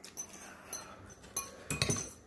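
Metal forks clinking against bowls in several light, scattered clinks as noodles are scooped and stirred.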